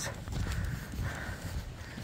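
Footsteps crunching on packed snow at a walking pace.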